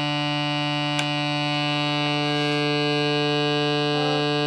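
Homemade foot-played fan organ sounding steady drone notes, a low note with a stack of overtones held throughout. A single click comes about a second in, and a higher note swells in about a second and a half in.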